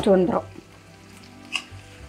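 Marinated chicken pieces frying in a pan with a faint, steady sizzle as a spatula turns them, with one short scrape of the spatula on the pan about one and a half seconds in.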